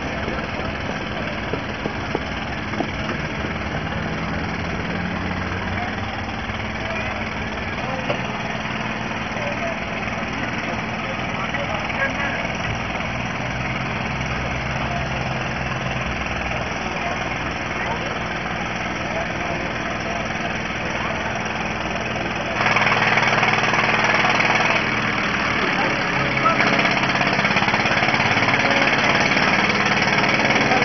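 A vehicle engine idling steadily, with background crowd voices. About 22 seconds in, the sound abruptly gets louder and brighter.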